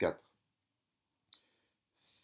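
A short click about a second and a quarter in, in an otherwise near-silent pause between words.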